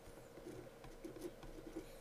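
Pen writing numbers on paper: faint, short scratches and taps of the tip, over a faint steady hum.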